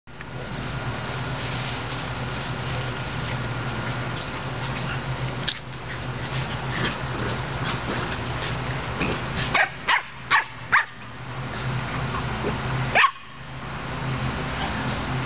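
Borador dog barking: four quick, high, short barks about two-thirds of the way in, then one louder bark near the end, over a steady low hum.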